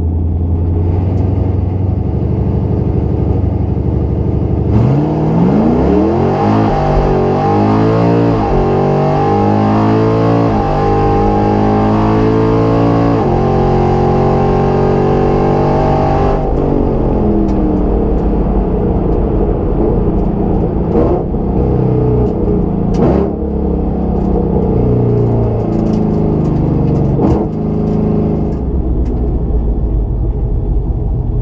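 Drag-racing car with an automatic transmission heard from inside the cabin: the engine holds a steady hum, then launches hard about five seconds in and revs up in rising sweeps broken by several upshifts. About sixteen seconds in it lets off and the engine note falls away as the car slows, with a few sharp cracks.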